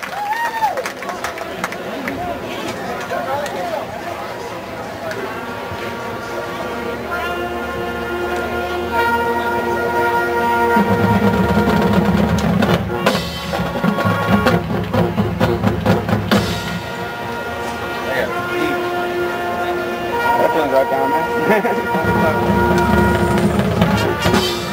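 Marching band playing: brass holding long sustained chords over drums and percussion, coming in softly in the first few seconds and growing fuller and louder from about eleven seconds in.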